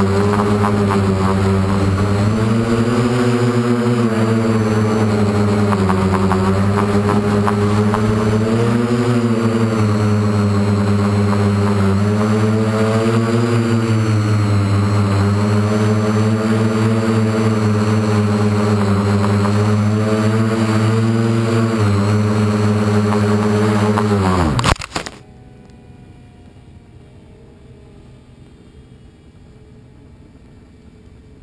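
Model aircraft's motor and propeller heard from on board, a loud steady drone that rises and falls a little in pitch with the throttle. About 25 seconds in, the pitch drops sharply and the motor stops abruptly as the aircraft crashes into a bush.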